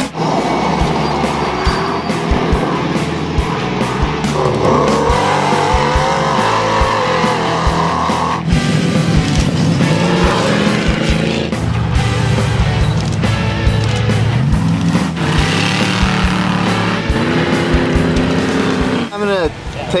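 Background music mixed with off-road race car engines revving.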